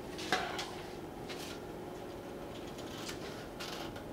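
Fabric scissors snipping through Ankara fabric: a few short, scattered cuts, the first the sharpest.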